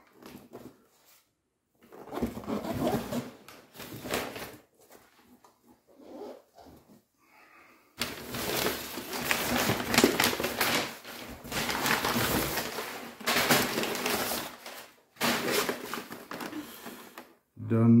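Crumpled packing paper rustling and crinkling in a cardboard box as hands dig through it: short uneven bursts at first, then a long unbroken stretch of rustling in the second half.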